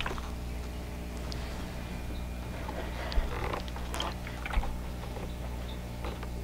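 Quiet rustling and soft taps of cotton fabric being handled and a steam iron sliding over it on a padded pressing board while seams are pressed open, over a steady low hum.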